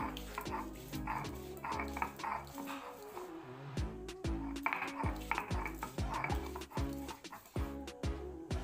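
Stone roller grinding soaked chickpeas on a stone grinding slab (shil-nora). Each stroke gives a rasping scrape, over background music.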